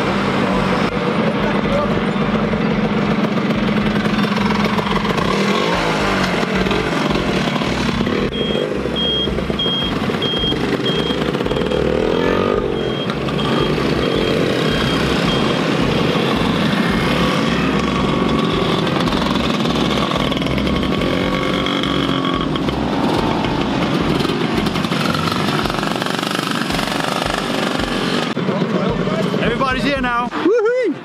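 A group of motor scooters riding past one after another, small engines running steadily, with voices mixed in.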